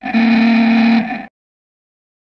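A cartoon character's voice: one held, buzzy vocal tone at a steady pitch for about a second, tailing off and then cutting to dead silence.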